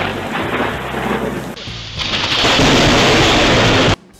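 Thunderstorm: thunder rumbling over steady rain. About a second and a half in it changes to a louder, steady rain hiss, which cuts off abruptly near the end.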